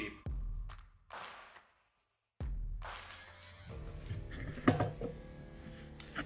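Music playing in the background, cut off for under a second about two seconds in, with a sharp knock about three-quarters of the way through.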